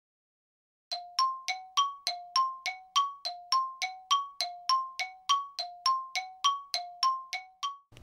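A two-note bell-like chime whose lower and higher tones are struck in turn, about three strikes a second, each ringing briefly. It starts about a second in and keeps an even, steady pattern.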